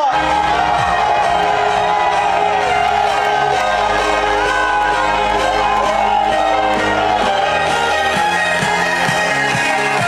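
A DJ set played loud through a concert PA system, held notes over a shifting bass line, with a crowd cheering and shouting underneath.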